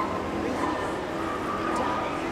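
A dog barking repeatedly over the murmur of voices.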